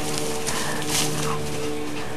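A steady low hum runs underneath faint, brief sounds of dogs moving and breathing as they play in the grass.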